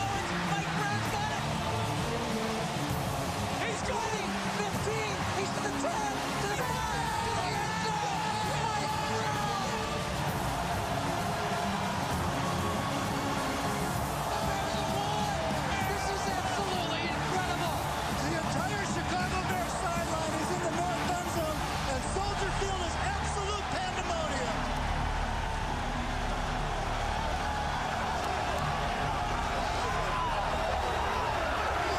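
Stadium crowd cheering and shouting after a game-winning touchdown, over background music whose low end swells about two-thirds of the way through.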